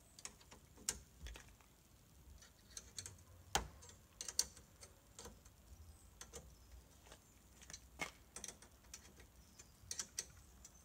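Scattered sharp clicks and taps at irregular intervals from the metal fittings of a black boot-lid luggage rack being adjusted and tightened by hand on a car's boot lid, the loudest about three and a half and four and a half seconds in.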